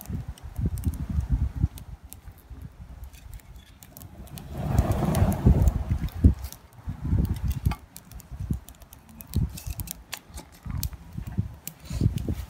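Wind rumbling on the microphone, with scattered sharp clicks and knocks as split firewood boards are stacked log-cabin style onto a small burning wood fire. A louder gust of wind comes about five seconds in.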